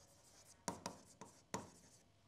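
Faint taps and short scratches of a stylus writing on an interactive touchscreen board, about four separate strokes in the second half.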